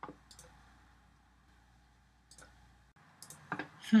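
Computer mouse clicks: a sharp click, a second one just after it, and a third about two seconds later.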